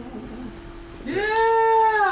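A single drawn-out pitched cry, rising, held and then falling away, a little over a second long, starting about a second in.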